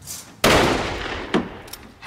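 A loud gunshot about half a second in, its report ringing on for about a second, then a shorter sharp crack just under a second later.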